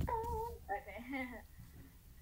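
A girl's high-pitched voice: a short drawn-out vocal sound, then a spoken 'okay'.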